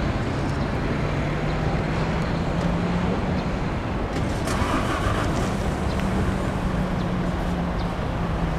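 A motor vehicle's engine running with a steady low hum that shifts slightly up and down in pitch.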